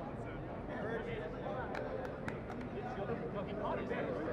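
Indistinct voices of several players talking and calling out across an open field, with a few short sharp clicks about two seconds in.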